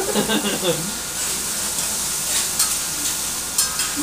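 Food sizzling on a hot flat-top hibachi griddle, a steady hiss, with a few sharp clicks in the second half. Brief laughter opens it.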